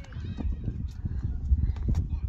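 Wind buffeting the microphone as a constant low rumble, with faint children's voices in the background.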